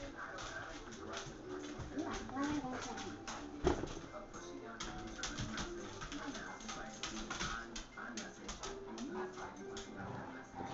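Two dogs playing tug-of-war with a toy, with short clicks and scuffles and one sharp knock nearly four seconds in, over background music and indistinct voices.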